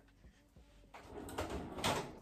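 Faint handling noise of someone rummaging for a roll of tape: soft rustles and a few knocks in the second half, the loudest just before the end, like a drawer or door being slid.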